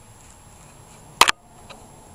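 Two sharp clicks in quick succession about a second in, then a faint tick, over low background hiss: a marker pen and paper template being handled while tracing a stocking outline on felt.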